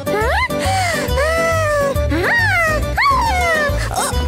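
Cartoon soundtrack: background music with a steady bouncing beat, over which a cartoon character gives three or four high cries that swoop sharply up in pitch and slowly fall away.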